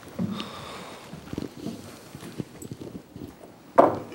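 Scattered footsteps, shuffling and light knocks of people moving about a room, with one loud thump near the end.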